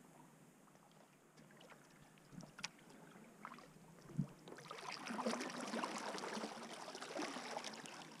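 Kayak paddle strokes in calm water: faint drips and trickles off the blade at first, then louder splashing and gurgling as the blade digs in and pulls through, with a single light knock about halfway through.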